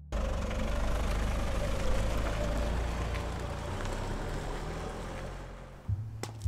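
A car engine running with a steady low rumble that fades near the end.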